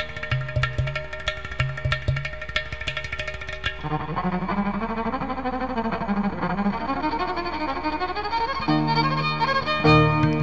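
Ten-string double violin playing Carnatic music in raga Abheri. For the first few seconds rapid percussion strokes sound over low notes. From about four seconds in, a low-register violin phrase slides up and down in ornamented glides, and near the end it settles onto steady held notes.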